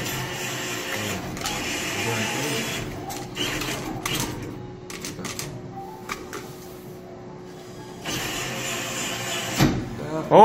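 Claw machine's motors whirring as the claw lowers onto a plush, closes and winds back up. The machine's own music and sound effects are switched off, so only the mechanism and arcade background noise are heard, with a few light knocks along the way.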